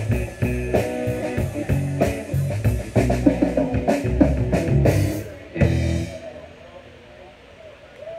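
Live rock band of electric guitar, bass guitar and drum kit playing an instrumental passage that ends with a final hit about six seconds in, after which the sound drops to quiet background noise.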